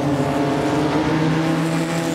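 A race car being driven hard on a dirt track: the engine running steadily under a rough hiss of tyres and thrown dirt.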